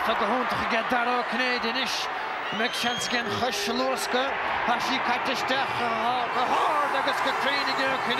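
Match commentary: a man's voice talking continuously over steady background crowd noise from a football ground, with a few short knocks.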